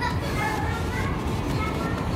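Faint background chatter of people, including children's voices, over a steady low rumble.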